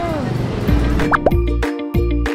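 A woman's drawn-out 'mmm' of enjoyment while tasting food trails off over background noise. About two-thirds of a second in, bouncy music starts, with a repeated note, bass, clicks and short rising plop sound effects.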